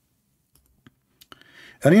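A few faint, sharp clicks, spaced irregularly, in an otherwise almost silent pause, followed by a brief soft hiss just before speech resumes.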